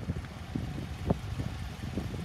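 Wind buffeting a phone's microphone outdoors: an uneven, choppy low rumble with a few brief bumps.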